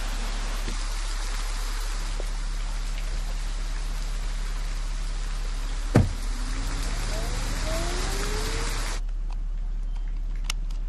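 Heavy rain pouring steadily. About six seconds in comes a sharp thump, then a car engine rising in pitch as the car pulls away. The rain cuts off suddenly near the end.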